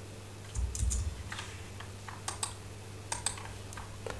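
Computer keyboard typing: an irregular run of about a dozen key clicks, with a dull low thump near the start, over a steady low hum.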